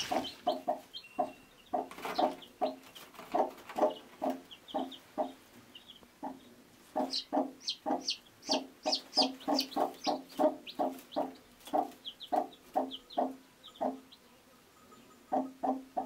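Broody hen clucking, short low clucks about two or three a second, with her chicks peeping high and fast over it, most busily in the middle. The clucking pauses briefly near the end.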